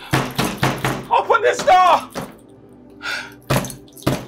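A fist banging on a locked door: a quick run of knocks, a voice shouting, then more bangs near the end.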